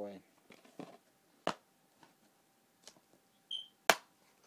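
Plastic DVD case and its wrapping being worked open by hand: a handful of scattered sharp clicks, the loudest a snap near the end.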